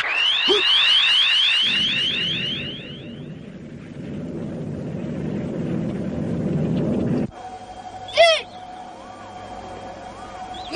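Electronic sound effects from a film soundtrack. A quick run of rising chirps, about five a second, fades over the first three seconds. A rumbling noise then cuts off suddenly. A steady hum follows, with two short warbling calls.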